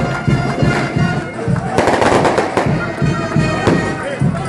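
Frevo played by a carnival street band: wind instruments over a regular drum beat. About two seconds in, a sudden loud burst of noise cuts across the music for under a second.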